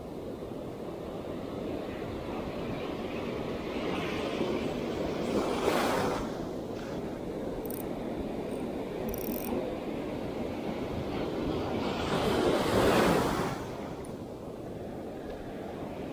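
Sea surf breaking on the shore: a steady wash of waves, with two larger waves surging up and breaking, about five seconds in and again about twelve seconds in.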